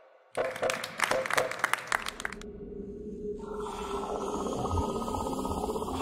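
A short burst of clapping and cheering, followed by a steady hissing sound effect over a low hum.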